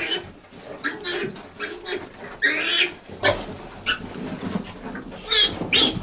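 A litter of five-day-old piglets suckling at a sow, giving short high squeals, one longer and louder about two and a half seconds in and several close together near the end, over the sow's low, repeated grunts.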